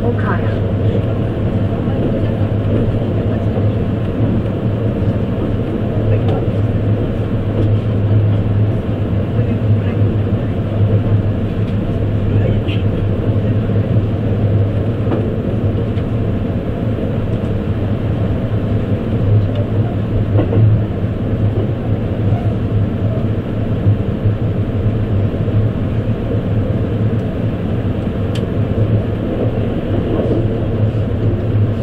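Running noise inside an E257-series electric limited express train moving at speed: a steady rumble and hum of the car rolling along the track, with a few faint clicks.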